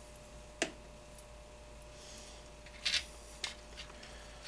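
A few small clicks and taps of a hand tool and a screw being worked into an RC car chassis: one sharp click early, then a short cluster of clicks near the end, over a faint steady hum.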